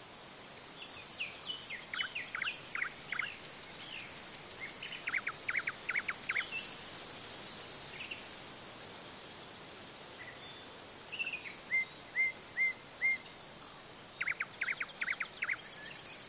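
Birdsong: small birds singing phrases of quick chirps and trills over a steady background hiss, with a run of four matching short notes about two-thirds of the way through.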